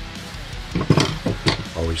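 Metal hand tools (screwdrivers and pliers) set down on a workbench: a quick run of clinks and knocks about a second in.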